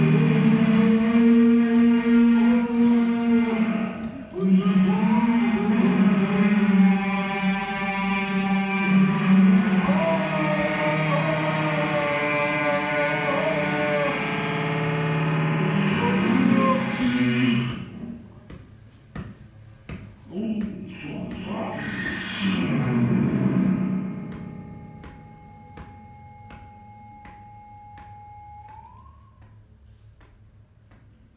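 Live experimental electronic music: loud, wavering drone tones with echo for about the first half, then a sudden drop to quieter swells. Near the end a thin steady tone holds and then glides upward, over faint scattered clicks.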